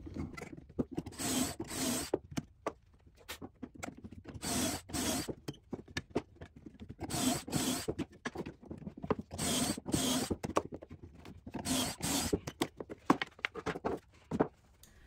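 Yellow one-handed bar clamp being worked to hold a portable pocket-hole jig on a pine board. The sound comes as short strokes in pairs, five pairs about two and a half seconds apart.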